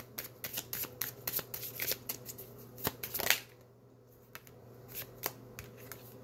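A deck of cards shuffled by hand: a quick run of light flicking clicks for about three seconds, then a few scattered taps as the shuffling slows.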